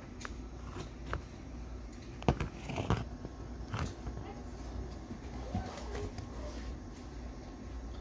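Handling noises from working a piece of baseboard trim into place to mark it: a few short light knocks, the loudest about two seconds in, and faint scraping in between.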